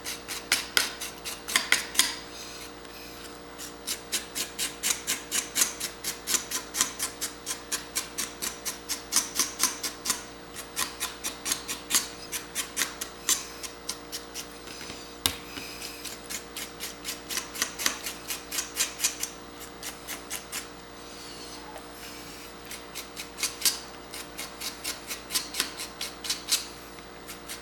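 A small knife blade scraping the brown skin off the tip of a geoduck siphon against a cutting board, in quick repeated strokes about three a second, with a couple of short pauses.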